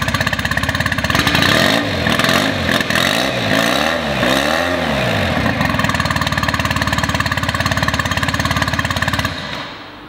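Yamaha 9.9 HP four-stroke outboard idling steadily, just after an electric key start; the sound falls away shortly before the end.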